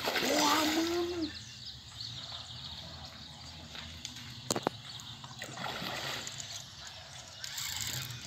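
Hooked fish splashing at the surface of the pond as it fights the line, in a spell at the start and another from about five and a half seconds in.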